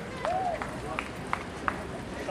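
Footsteps of people walking on a paved path, sharp steps about three a second, over a murmur of crowd chatter with a brief voice early on.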